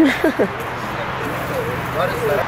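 Young men's voices calling out briefly at the start, then steady outdoor background noise with a faint voice near the end.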